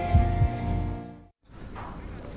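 TV show theme music with held tones and low thumping beats, fading out over the first second and a half and dropping to a brief silence, then a faint steady background.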